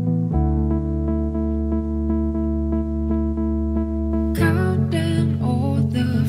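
Gentle chillout house music: held synth chords with a deep bass note that comes in just after the start, and a higher melody line with sliding pitch that enters about four seconds in.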